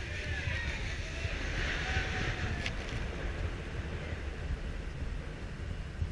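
Intamin hyper coaster train being hauled up a steep chain lift hill: the lift chain and train give a steady low rumble with irregular low knocks.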